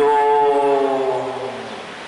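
A man's voice through a handheld microphone holding a drawn-out hesitation syllable, 'yung', for about a second and a half, its pitch sliding slightly down as it fades.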